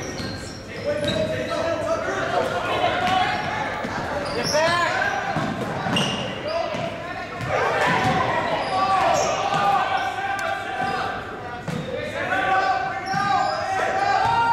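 Basketball bouncing on a hardwood gym floor during play, with shouting voices of players and spectators, echoing in a large gym.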